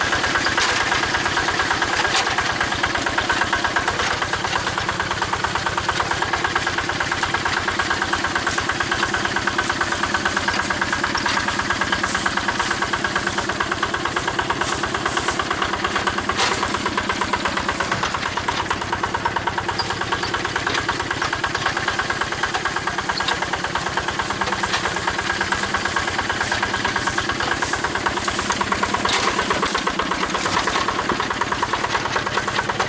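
Two-wheel hand tractor's single-cylinder diesel engine running steadily with a rapid, even firing beat, with a few sharp clicks over it.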